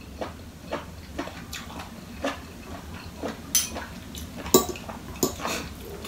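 Metal fork and spoon clinking and scraping against a plate in irregular light clicks, the sharpest two about three and a half and four and a half seconds in.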